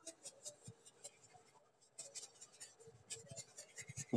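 Very faint scratching of a paintbrush dabbing poster colour onto paper, in short irregular strokes.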